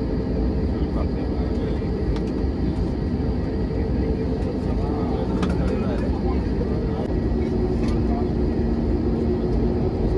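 Steady cabin rumble of an Airbus A320-family jet airliner taxiing on the ground, its engines at low thrust, with a few faint steady tones in the noise. Passengers' voices murmur faintly beneath it.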